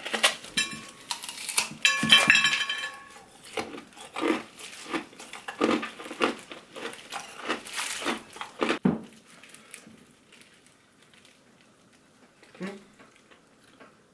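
Teeth biting and cracking a thin, hollow slab of clear ice with water frozen inside: a run of sharp cracks and crunches with glassy clinks, stopping about nine seconds in.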